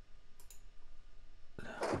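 A few faint, sharp clicks at a computer, about half a second in, followed near the end by a man starting to speak.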